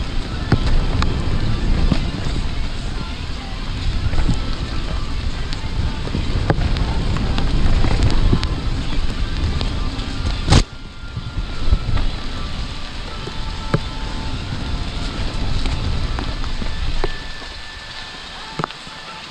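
Mountain bike descending a wet dirt singletrack at speed: a continuous low rumble of tyres on dirt and wind on the microphone, with many small rattles and clicks from the bike over roots and bumps. A single sharp knock comes about ten and a half seconds in, after which the rumble is lower.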